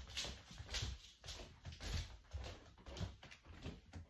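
Handling noise from a phone being moved about: irregular rustling and soft bumps, several a second.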